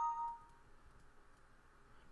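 Windows system alert chime: a short two-note falling ding as a message box pops up, here signalling an error that the program can't load the device info.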